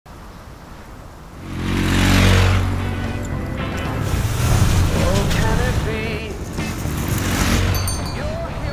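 Motorcycle engines running, with a rushing whoosh that swells in about a second and a half in and then eases off, under background music.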